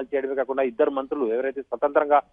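Speech only: a reporter speaking continuously in Telugu, the voice thin and cut off at the top as over a telephone line.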